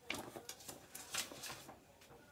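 Paper and packaging rustling and crinkling as items are handled in a box: an irregular run of short, sharp rustles and clicks, loudest about a second in.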